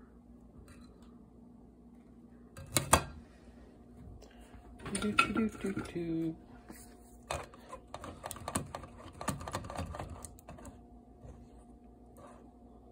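A sharp knock about three seconds in, a short laugh, then a run of scraping and clicking as a silicone spatula is worked against a stainless wire-mesh strainer full of slimy marshmallow root.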